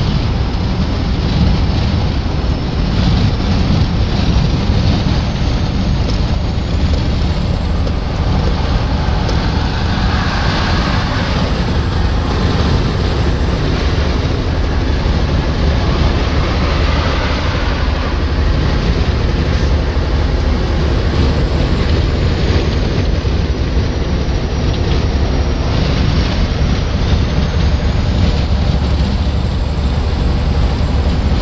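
Steady road noise inside a vehicle cabin at highway speed: a deep rumble from tyres and drivetrain with a rushing wash of wind, some of it buffeting the phone's microphone.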